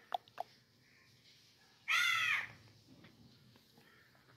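A few sharp clicks in the first half second, then about two seconds in a single loud, harsh bird call lasting about half a second.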